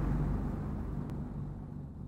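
The low rumble of a deep cinematic boom dying away, the tail of an animated logo sting, fading steadily.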